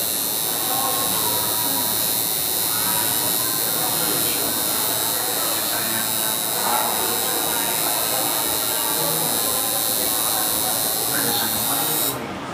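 Electric tattoo machine buzzing steadily as the needle works into the skin.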